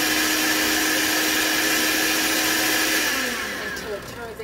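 Countertop blender running steadily at high speed, grinding granulated sugar into powdered sugar. About three seconds in it is switched off and the motor winds down with a falling whine.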